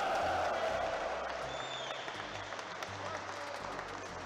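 Audience reaction to a Russian-billiards break shot: a mass of voices and applause that starts just before and slowly dies away, over background music.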